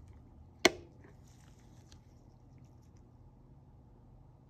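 A single sharp click about two-thirds of a second in, followed by a few faint handling sounds, as the microscope's revolving nosepiece is turned to a higher-power objective lens.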